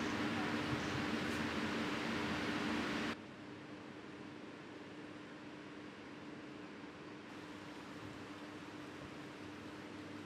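Steady hiss and low hum of machinery in an indoor hydroponic growing room. About three seconds in it drops suddenly to a quieter hiss, with a faint hum still under it.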